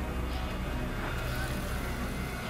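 Dramatic television score with a steady low rumble under it, from the episode being watched.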